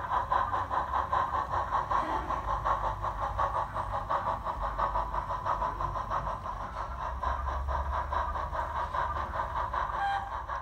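The recorded steam exhaust of a Peckett industrial locomotive, played by a Zimo MX648R DCC sound decoder through a tiny 20 × 20 mm speaker in an O gauge model. It chuffs in a steady, even rhythm as the model runs, with a faint rumble of the model on the track underneath, and grows a little quieter in the second half.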